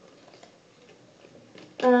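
Faint, sparse light clicks and taps from hands handling collector cards and small plastic toy figures.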